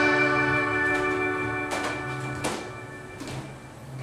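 The last chord of a song's backing track, held and ringing out as it fades away. A few faint knocks come in the second half.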